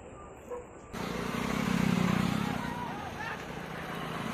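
A motor vehicle passing close by: engine and road noise swell up about a second in, peak, then ease off, with voices faintly underneath.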